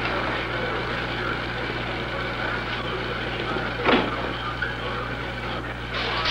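Steady hiss over a low hum, with one brief sharp sound about four seconds in.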